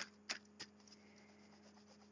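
Tarot cards handled in the hands: three soft clicks of the cards in the first half second, then near silence with a faint steady hum.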